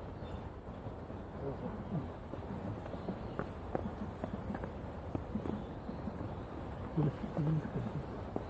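Outdoor garden ambience: soft, irregular footsteps of someone walking on a dirt path, with faint voices of people nearby, a little louder near the end.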